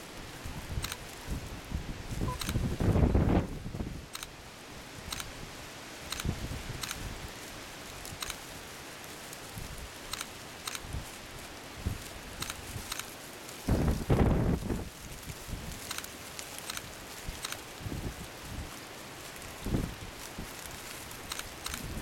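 Wind buffeting the microphone outdoors: a low rumbling noise that swells in two strong gusts, about three seconds in and again around fourteen seconds, over a faint, evenly spaced ticking.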